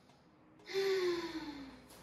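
A woman's audible breathy sigh or exhale with a voiced tone sliding down in pitch, starting about half a second in and lasting about a second.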